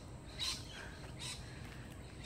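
A few faint, short bird chirps over a low, steady background rumble.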